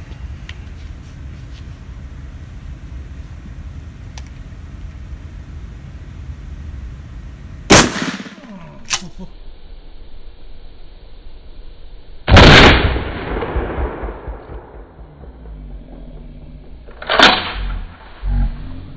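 12-gauge shotgun firing rifled slugs: loud reports about eight, twelve and seventeen seconds in, the middle one dying away in a long rolling echo, with a smaller sharp crack about a second after the first. A steady low rumble lies between the shots.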